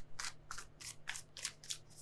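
A tarot deck being shuffled by hand: a quick, uneven run of crisp papery strokes as the cards slide and slap against each other.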